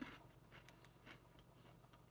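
Near silence with faint, scattered crunches of a crisp biscuit being chewed with the mouth closed.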